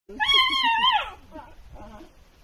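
A dog's single high, whining howl about a second long, its pitch falling at the end.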